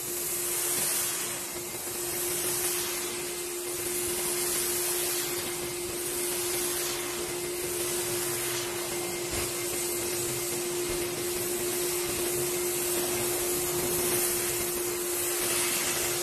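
Air-dusting wand worked over a wool rug, a steady rush of air with a steady motor hum underneath, pulling out the dry soil left after the first dusting.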